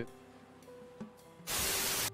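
Faint background music, then about half a second of loud white-noise TV static near the end, used as a transition sound effect.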